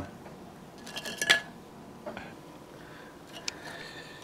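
A cockatiel rummaging in a ceramic cookie jar: its feet and beak scrape and click against the cookies and the glazed sides of the jar. These are a few soft scrapes and clicks, the loudest a little over a second in, with a sharp click about three and a half seconds in.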